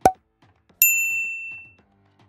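A short knock, then a single bright bell-like ding a little under a second in that rings and fades away over about a second: an editing sound effect.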